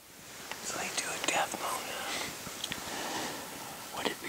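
A man whispering, hushed and breathy, with no full voice.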